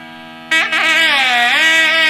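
Carnatic wedding music on a nadaswaram, a loud double-reed wind instrument, playing a melody of sliding, bending notes over a steady drone. The melody stops briefly while the drone holds, then comes back about half a second in with a swooping phrase.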